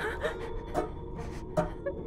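A young girl sobbing, with a few short catching breaths and sniffs.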